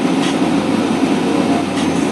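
Steady rumble and hiss of a car's cabin, with a low hum joining about two-thirds of a second in.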